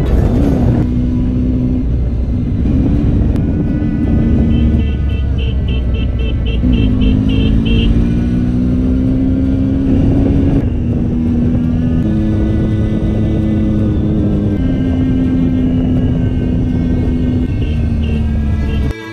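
Triumph motorcycle engine running at road speed, with wind rush, under background music.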